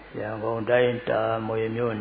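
A Buddhist monk's voice reciting in a chant-like intonation, in two long held phrases.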